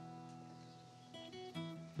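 Soft acoustic guitar background music: a held chord fading away, then a few new plucked notes a little past one second in.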